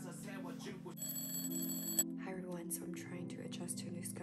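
Background music with a voice over it. About a second in, a high electronic alarm tone rings steadily for about a second and cuts off suddenly, a wake-up alarm.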